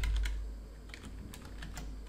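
Typing on a computer keyboard: a run of irregular key clicks as a line of text is entered.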